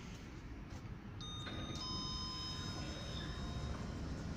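Otis Genesis elevator arrival chime: two electronic tones, the second about half a second after the first, ringing on together for about two seconds as the car arrives and its doors open.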